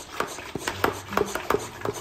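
Hand-held trigger spray bottle pulled over and over in quick succession, about five short clicking spritzes a second, misting potted cuttings.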